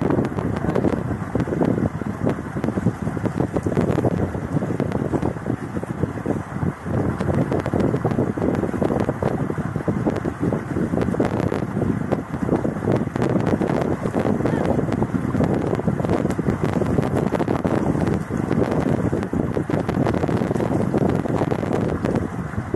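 Wind buffeting the microphone, a steady rough rumble, with water sloshing and splashing as a man washes his face with water from the pool during ablution.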